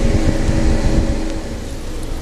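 Low, uneven rumble with a faint steady hum that fades out after about a second and a half, picked up outdoors on a police body camera's microphone.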